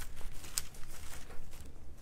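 Thin Bible pages being leafed through by hand: soft paper rustling, with one sharp page flick about half a second in.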